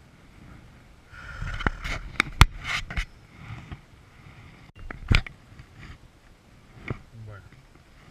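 Close handling noise from fly-fishing tackle: rustling of clothing and fly line, with a handful of sharp clicks and knocks as hands work the rod and line near the microphone. The clicks are loudest a couple of seconds in.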